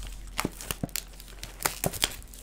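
Packaging of a trading-card booster box crinkling and crackling as it is handled and opened: a run of short, sharp crackles.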